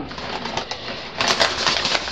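Paper envelope rustling as it is handled, with louder crinkling bursts in the second half.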